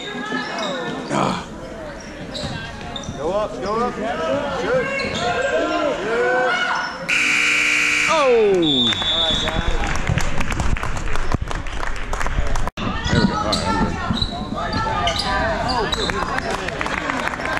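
Gym scoreboard horn sounding for about a second as the game clock runs out, over spectators shouting; many short claps and cheers follow.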